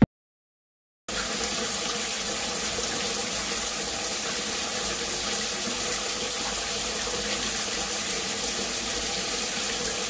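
Shower water running in a steady hiss, starting about a second in after a moment of silence.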